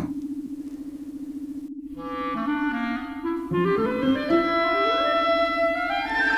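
Background music: a steady pulsing low hum, then, from about two seconds in, a run of woodwind-like notes climbing in pitch.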